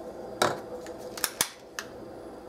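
A handful of short, sharp clicks and light taps from small kitchen containers being handled while a pinch of salt is added, the sharpest a quick cluster of three just past the middle.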